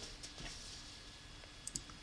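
A faint pause in the talk with low room hiss, and a couple of small, sharp clicks near the end.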